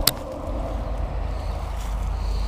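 A sharp click at the very start, then a steady low rumble of wind buffeting a body-worn action camera's microphone.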